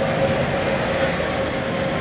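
Steady road traffic noise: a continuous, even rumble and hiss of passing vehicles.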